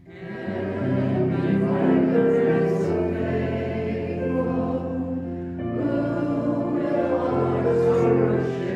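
A group of voices singing a hymn together with instrumental accompaniment, a new phrase coming in after a short pause, with long held notes over a steady bass.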